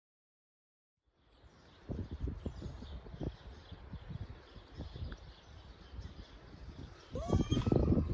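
Outdoor ambience beginning about a second in: wind gusting and buffeting the microphone, with faint birdsong above it. Near the end, a short, louder vocal sound rises and falls in pitch.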